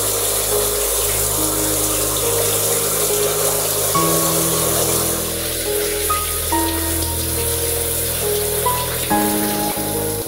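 Shower spray running and splashing as hair is rinsed under it, with background music of slow, held notes that change every second or two.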